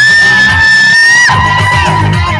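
Live band music: the beat drops out while one high note is held for about a second, then falls to a lower held note as the drums and bass come back in.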